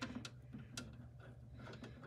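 A handful of faint, scattered clicks as a screwdriver works a motherboard screw into its standoff at an awkward angle, with the screw not finding its thread. A low steady hum runs underneath.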